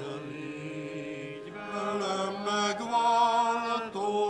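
Congregation singing a slow hymn with keyboard accompaniment, holding long notes that grow louder and step up in pitch about halfway through.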